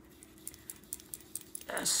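Pastel stick scratching and tapping across paper in short strokes: a scatter of small, light ticks. A spoken word begins near the end.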